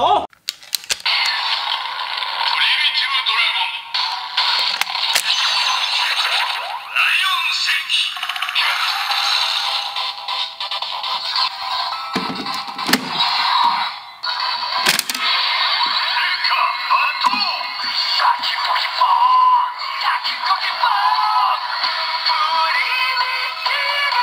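A DX Suiseiken Nagare toy sword with the DX Primitive Dragon Wonder Ride Book attached, playing its rampage transformation sequence through its small built-in speaker: electronic announcer voice, chanting and standby music, thin and without bass. A few sharp clicks and knocks from handling the toy's buttons and trigger.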